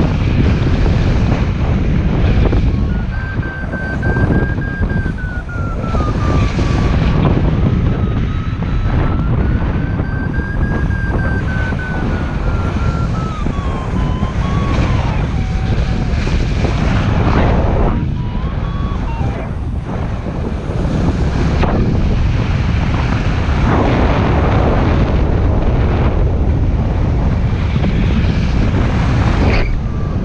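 Wind rushing over the microphone of a paraglider pilot in flight, a loud, steady low rush that swells and dips. A thin wavering tone slides up and down in pitch through about the first half.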